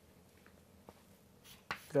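Chalk writing on a chalkboard: faint scratching with a couple of light ticks as chalk strokes meet the board. A man's voice starts near the end.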